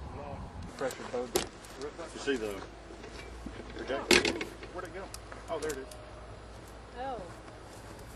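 Indistinct voices talking, too unclear to make out words, with a few sharp clicks and clinks among them, the loudest about four seconds in.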